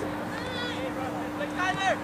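Two shouted calls from people on or beside a soccer field, the second louder near the end, over a steady low hum.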